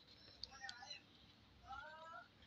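Near silence broken by two faint, brief voice-like sounds, one about half a second in and one near the end.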